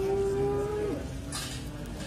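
Cattle mooing: one long, steady moo that drops in pitch and ends about a second in.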